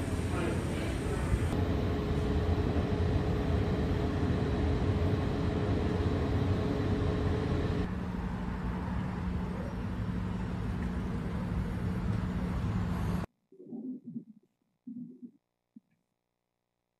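Busy ambience on a train station platform beside a parked electric train, with a steady hum running through it. About eight seconds in it gives way to city street traffic noise with a lower steady hum. The sound cuts off abruptly near the end, leaving near silence broken by a few short faint sounds.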